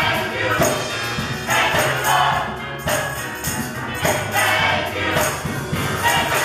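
A gospel church choir singing in full voice over keyboard accompaniment, with a tambourine jingling on the beat.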